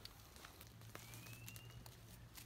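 Near silence: faint outdoor ambience with a few faint scattered clicks and a thin, faint high whistle lasting under a second about halfway through.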